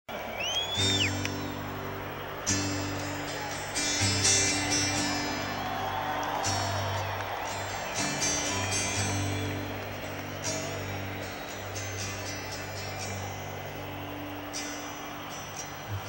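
Acoustic guitar strumming slow chords that change every couple of seconds, taped from the audience, with crowd voices and shouting over it and a short whistle near the start.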